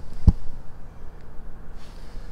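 Handling noise from a camera being carried across asphalt: one short low thump about a quarter second in, then a faint, uneven low rumble.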